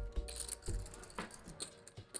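Clay poker chips clicking irregularly as players riffle and handle them at the table, over faint background music.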